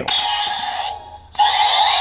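DX Seiza Blaster toy playing the Tate Kyutama's electronic special-attack sound effect through its small speaker. Warbling synthesized tones break off for a moment about a second in, then start again.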